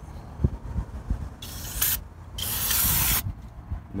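Aerosol brake cleaner sprayed through its straw nozzle onto a drum brake backing plate to wash off brake dust and debris: short bursts of hiss about a second and a half in, then a longer one of nearly a second. A few light knocks come before the spraying.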